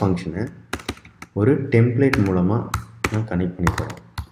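Keystrokes on a computer keyboard: a few separate clicks about a second in, then a quicker run of taps in the second half, with a person talking in between.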